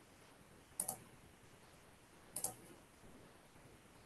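Two short computer mouse clicks about a second and a half apart, over faint room tone.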